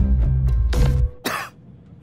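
Dramatic trailer score with a deep low drone that cuts off abruptly about a second in. A short harsh cough follows, heard on its own after the music drops away.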